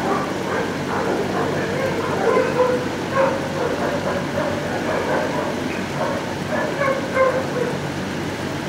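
Many shelter dogs barking and yipping over one another in a kennel block, a continuous dense din with no single bark standing out.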